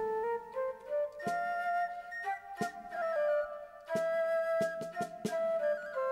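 Instrumental music: a flute-like woodwind plays a melody of held notes, over short, sharp accompanying notes.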